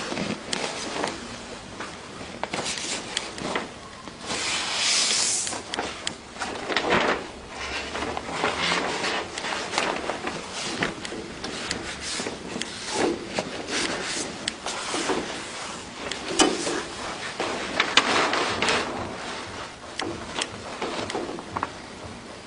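Irregular rustling and sliding of a large sheet of print media under hands as it is smoothed and lined up on a cold laminator's feed table, with a few sharp clicks.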